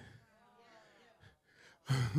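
A pause in a man's amplified speech with only faint, distant voice sounds, then a man laughing into a handheld microphone just before the end.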